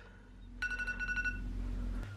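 Smartphone alarm tone sounding: a steady high beep that starts about half a second in and lasts about a second, over a low steady hum.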